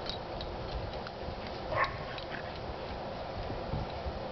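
A dog gives one short yelp about two seconds in, over a steady low background hum.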